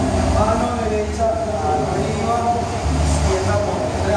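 Indistinct voices of people in a large room, with no clear words, over a steady low rumble.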